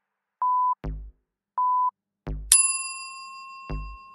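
Workout interval timer counting down: short high beeps about a second apart, then a ringing bell-like ding a little past halfway that marks the start of the next work interval and fades slowly. Deep thumps from the backing music fall between the beeps.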